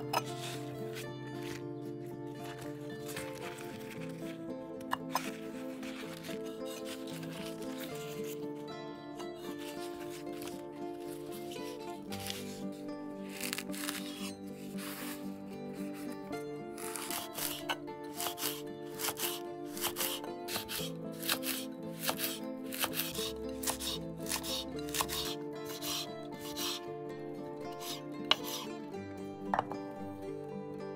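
Kitchen knife cutting leaves on a wooden cutting board, first trimming stems, then slicing the rolled leaves into thin strips with many quick crisp cuts, thickest in the second half. Background music plays throughout.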